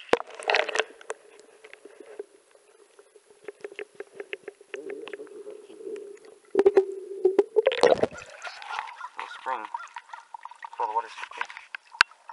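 Sound picked up by a camera held under the water of a clear creek spring: a muffled, steady drone with scattered small clicks and knocks, then a loud rush of water about eight seconds in. After that, muffled voices come through.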